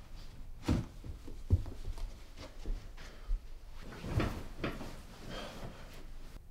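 Knocks and rustling from things being handled at a wooden bedside table: a few separate thuds, the loudest about one and a half seconds in, with another cluster about four seconds in.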